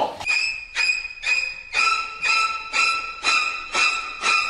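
Edited-in suspense music cue: a high ringing note repeated about twice a second, with a lower note joining the pattern about two seconds in.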